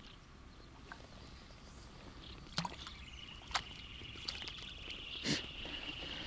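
A hooked young bream splashing faintly at the water's surface as it is drawn in toward the bank, with a few sharp clicks. From about halfway a thin, steady high-pitched whine joins in.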